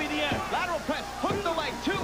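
Television wrestling commentary: a man's voice over arena crowd noise, with a music-like sound mixed in.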